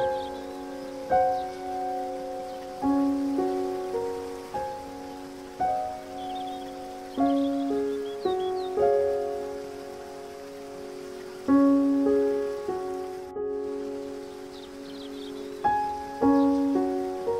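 Slow, gentle solo piano music, each note struck and left to fade, over a steady background hiss of water. A few faint high bird chirps come in about halfway through and again near the end.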